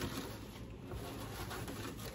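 Faint rustling of a gloved hand gathering crumbled freeze-dried sloppy joe meat on a silicone baking mat, over a low room hum.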